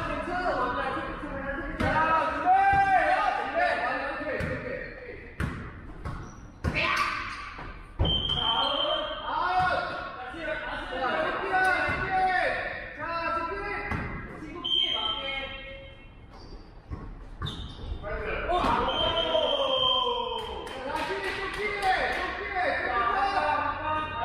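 A basketball bouncing and thudding on a wooden gym floor during play, with players' voices calling out through most of it and echoing in a large hall. A few short high squeaks cut in along the way.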